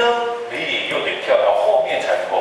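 A man speaking Mandarin, lecturing.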